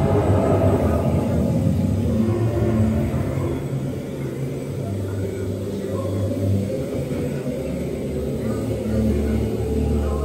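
Spaceship Earth ride soundtrack playing a loud, steady low rumble with long held low notes that shift pitch every second or two.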